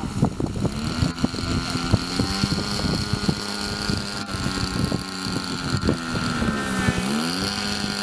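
Radio-controlled model airplane's motor and propeller running at a steady low throttle as it taxis on grass, the pitch dipping and rising back up near the end. Crackling wind buffets the microphone throughout.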